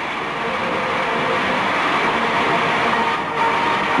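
Large audience applauding steadily as a finalist is named.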